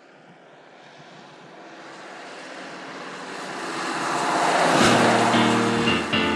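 A whoosh sound effect that swells steadily out of near silence for about five seconds, peaks, and gives way to music near the end.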